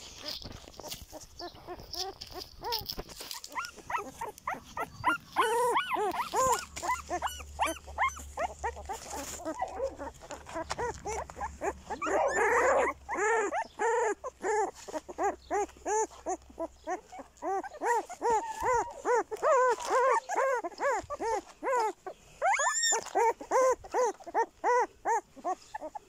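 A litter of newborn shepherd-dog puppies whimpering and squealing: many short, high, rising-and-falling cries, several a second and often overlapping.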